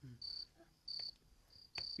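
Crickets chirping: about four short, even chirps at one high pitch, roughly half a second apart.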